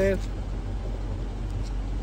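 Steady low rumble of city traffic in a pause between a man's words, with his last word ending just as it begins.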